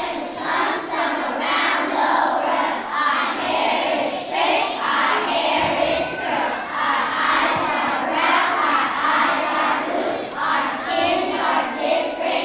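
A large group of young children singing loudly together in unison, in continuous phrases.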